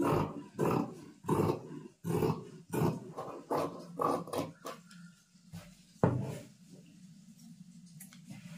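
Large tailor's scissors cutting through brocade blouse fabric, the blades and lower blade grating along the cardboard cutting board. The snips come about one to two a second for the first four seconds or so, then one more about six seconds in.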